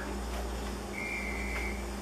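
Steady low hum of room tone, with a faint high-pitched tone held for under a second about halfway through.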